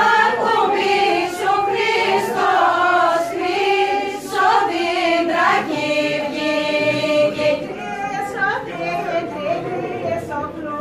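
A group of women and men singing a Thracian Christmas carol (kalanta) together, unaccompanied.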